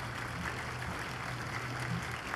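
An audience applauding steadily over a low, steady hum.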